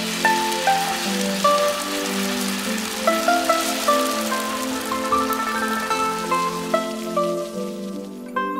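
Hot oil poured from a wok over a whole fried barramundi, sizzling on its skin, dying away near the end. Plucked-string music plays alongside.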